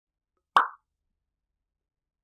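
A single short plop about half a second in, starting sharply and dying away within a fraction of a second.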